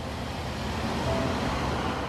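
Steady road-traffic and street noise: an even wash of sound with no distinct events.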